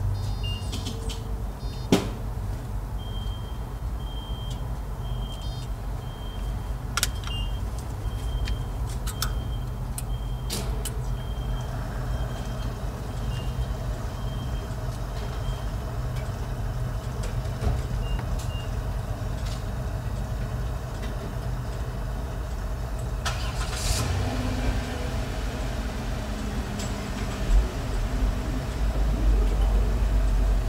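Car engine idling, heard from inside the cabin as a steady low hum, with a few sharp clicks and, for the first half, a faint high tone pulsing on and off.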